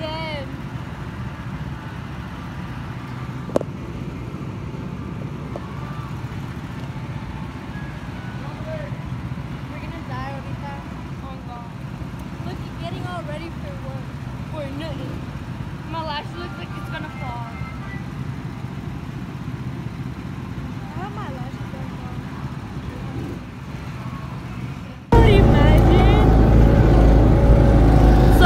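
Go-kart engines running with a steady low drone under faint voices. About 25 seconds in the sound cuts abruptly to a much louder rumble of engine and wind.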